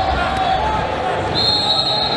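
Busy sports-hall ambience: crowd voices and dull thuds echoing in a large gym, with a high, steady, whistle-like tone that starts about one and a half seconds in and holds.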